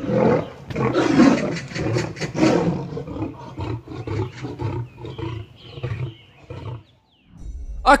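A lion and a tiger fighting: loud, harsh snarling and roaring for the first few seconds, settling into quieter, rapidly pulsing growls that stop about a second before the end.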